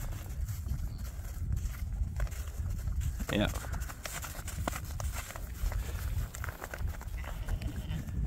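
Scattered crunching steps on frozen, snow-covered pasture, over a steady low rumble of wind on the microphone.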